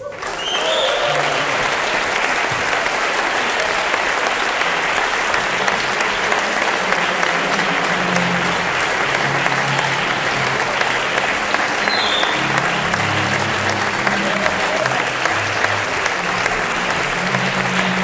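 Audience applauding: dense, steady clapping from a crowd.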